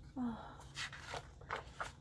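A woman's short "oh", then a few faint paper rustles and taps as a picture-book page is turned.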